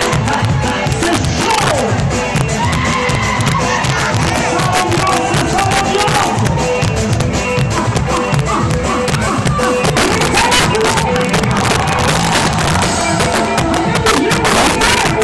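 Live salegy dance music played loud on a stage PA, with a fast, steady beat and singing over it, and crowd voices mixed in.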